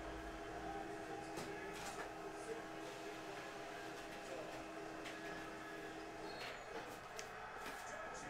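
Office printer printing a sheet: a steady hum with faint clicks that stops about six and a half seconds in.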